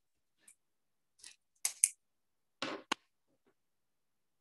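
A felt-tip marker pen being handled and set down on a wooden desk: a few sharp plastic clicks, the loudest halfway through, then a short clatter.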